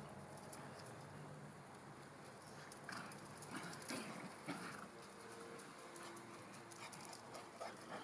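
Small dogs play-fighting, with a few faint, short growls about three to four and a half seconds in.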